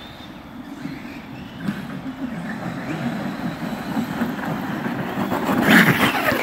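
Electric Traxxas X-Maxx 8S RC monster trucks racing, brushless motors whining and tires churning through snow and dirt, growing louder as they come closer. A louder burst near the end as one truck tumbles.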